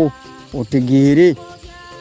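A man's voice drawing out one syllable, rising and then falling in pitch, over a steady background of several held high tones that run under the whole stretch.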